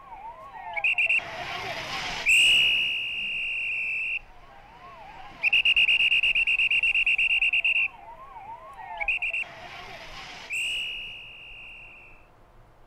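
Long shrill blasts on a traffic police whistle, five of them of differing length, over an emergency vehicle siren in yelp mode, its tone sweeping quickly up and down further back. Two short rushes of noise come in between blasts, near the second and near the tenth second.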